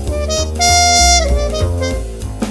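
Jazz trumpet playing a melodic line over a bass accompaniment. About half a second in, it holds one long, loud note that bends downward as it ends.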